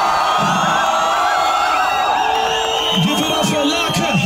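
Live concert sound: a crowd cheering and whooping over music and a voice on the stage microphone through the PA.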